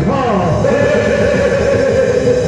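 A loud, drawn-out vocal cry that drops steeply in pitch, then settles into a long held note, over stage music.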